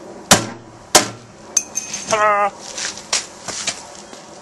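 Hammer driving a chisel against a steel ammo can to knock off its spot-welded top latch. Two sharp, ringing metal blows come about two-thirds of a second apart near the start, followed later by a few lighter taps.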